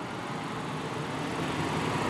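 Road traffic: a passing vehicle's tyre and engine noise, a steady rush that grows slowly louder.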